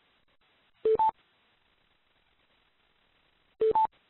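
Conference-call line chimes: two quick two-note beeps, a low note then a higher one, heard twice about three seconds apart, the kind a teleconference bridge plays as callers join the line.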